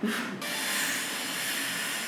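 A long, steady breath rushing through a surgical face mask, held for about two seconds: a woman breathing hard through the pain of a nipple piercing as the needle goes in.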